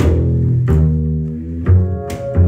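Upright double bass played pizzicato, walking low plucked notes, together with a keyboard striking chords, with sharp attacks at the start and again about two-thirds of a second and just under two seconds in.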